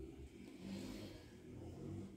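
Faint rustle of cotton crochet thread being pulled into a knot by hand, loudest about a second in, over a low steady background rumble.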